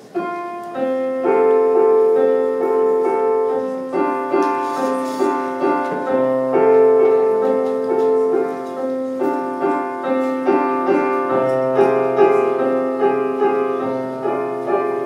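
Digital stage piano playing the opening of a slow song: sustained chords struck in a repeating pattern, with low bass notes joining about six seconds in.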